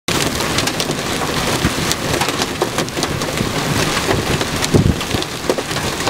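Heavy rain pelting a vehicle, a dense steady hiss full of sharp drop impacts, with a brief low thump a little before the end.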